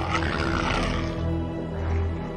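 A monstrous roar sound effect that trails off about a second in, over dark, droning horror music.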